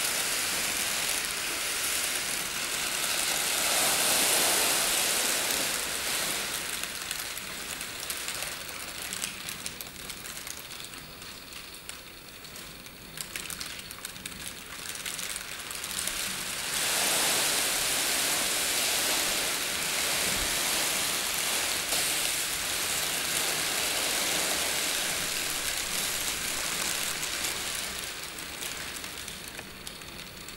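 Crumpled plastic sheeting crinkling and rustling as a body moves in it, a dense crackle that swells and fades. It is loudest a few seconds in, thins out midway, then swells again for the second half.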